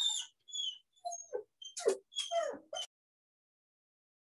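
A dog making a string of short, high-pitched cries, several falling in pitch. The cries stop abruptly about three seconds in.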